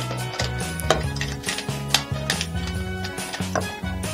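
Background music with a bass line of steady low notes changing step by step. Over it are scattered light clicks and knocks of hard plastic as a small action figure is pressed into the toy mech suit's cockpit.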